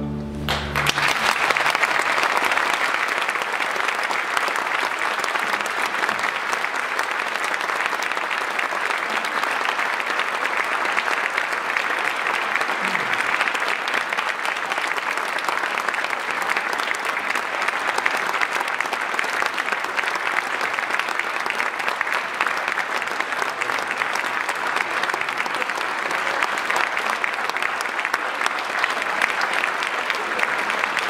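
A string orchestra's closing chord cuts off right at the start, then a concert audience applauds steadily.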